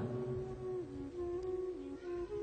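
Soft background music under a pause in the talk: a melody of long held notes that steps down and back up in pitch a couple of times.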